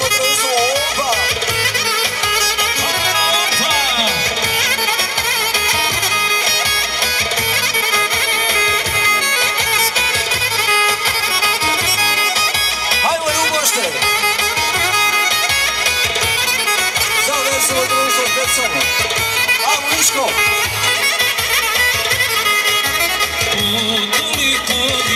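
Loud, continuous folk dance music led by a reedy wind instrument with a wavering melody over a steady drum beat, played for a hand-held circle dance.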